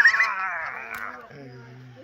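Wordless voices: a high, wavering vocal sound that fades out over the first second, then a quieter, low, steady hum.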